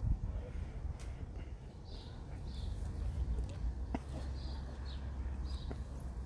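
Small birds chirping on and off over a low outdoor rumble, with a couple of faint clicks.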